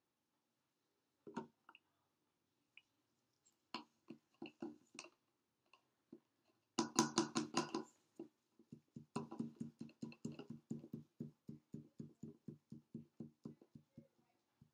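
Copper sulfate solution glugging out of its bottle into a graduated cylinder. A few scattered clicks come first, then a loud cluster of glugs about seven seconds in, then an even run of quick glugs, about five a second.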